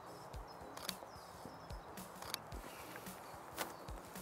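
Quiet outdoor ambience: a faint steady hiss with a few soft clicks, short low thumps every second or so, and faint bird chirps.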